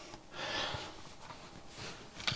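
A short breath out through the nose, close to the microphone, with a faint click from small parts being handled on the workbench.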